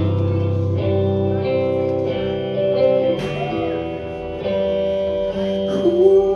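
Live guitar playing sustained chords in an instrumental passage of a country-rock song, the chords changing every second or so over a strong low end.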